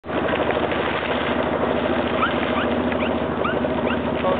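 An engine running steadily at a fast, even beat, with a few short rising chirps over it from about halfway through.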